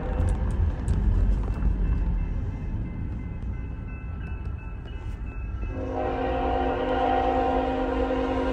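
Steady low rumble of a car driving toward the grade crossing, heard from inside the cabin, then about six seconds in a BNSF freight locomotive's air horn sounds a steady, held chord as the train approaches the crossing.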